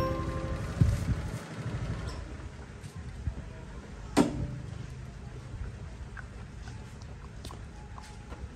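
Motor scooter running at low speed, a steady low rumble as it pulls up and stops, with a sharp click about four seconds in. Music cuts off at the very start.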